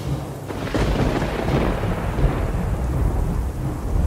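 Thunder rolling with rain, the deep rumble swelling about half a second in and carrying on.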